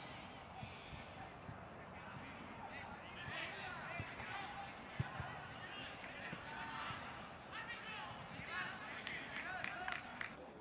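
Field sound of a soccer match: players' voices shouting and calling across the pitch, with one sharp thump about halfway through.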